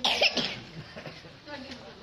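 A person coughs once, short and loud, right at the start, followed by faint voices.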